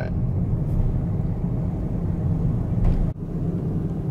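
Car road and engine noise heard from inside a moving car's cabin: a steady low rumble, with a brief sudden drop about three seconds in.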